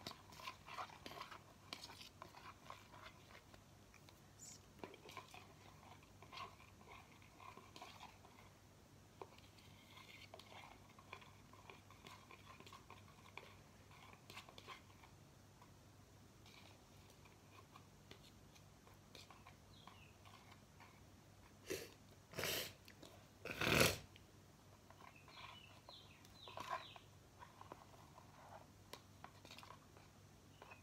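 A metal spoon stirring and scraping a sticky glue and shaving-cream slime in a small plastic container, with soft irregular clicks and squelches. A few louder knocks or rustles come about three quarters of the way through.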